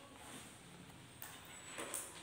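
Faint scratching of a ballpoint pen writing on lined paper, with a few light clicks in the second half.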